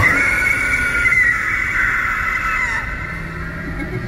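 Animatronic doll's built-in speaker playing a high, wavering cry-like sound effect that trails off and drops in pitch after about three seconds.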